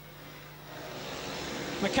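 Speedway motorcycles racing, the 500cc single-cylinder engines heard together as one noise that grows louder through the second half.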